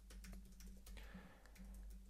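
Faint typing on a computer keyboard: a quick run of quiet keystroke clicks over a steady low hum.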